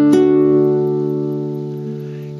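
Classical guitar with a D major chord picked note by note from the D string upward. The last, highest note is plucked just after the start, and the chord then rings on, slowly fading.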